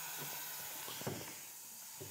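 Bench dust collector running with a steady airy hiss, dropping a little in level about halfway through, with a faint tick near the middle.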